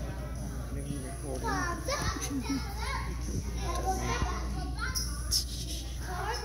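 A group of young children's voices, high-pitched and rising and falling together.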